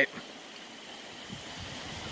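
Steady rain falling, an even wash of water noise.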